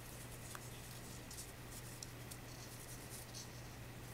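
Faint rustling and a few small ticks as fingers handle and twist ric rac ribbon, over a steady low hum.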